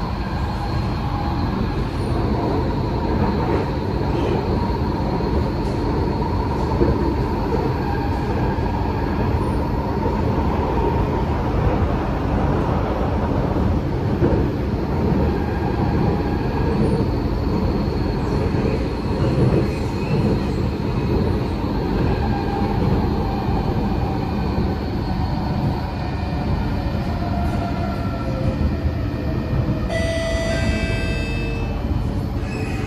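Cabin noise of a Kawasaki–Nippon Sharyo C751B metro train running between stations: a steady rumble of wheels on rail, with faint steady high tones over it.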